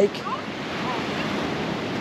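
Surf washing onto a sandy beach, a steady rushing noise of breaking waves, with wind on the microphone.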